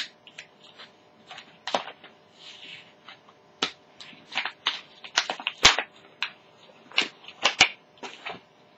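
Crinkly plastic packaging of a magazine's free slime pack being handled and opened: irregular sharp crackles and snaps, loudest a little past the middle.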